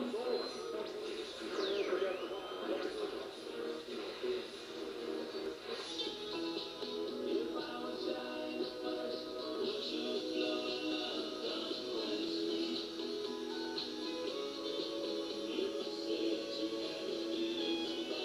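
Music playing from the small built-in speaker of a 1986 General Electric clock radio-television, tuned to an AM station, with a brief gliding tone about two seconds in.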